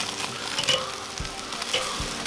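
Chicken wings sizzling over live charcoal on an open Weber kettle grill while they are moved around with metal tongs, with a few faint clicks.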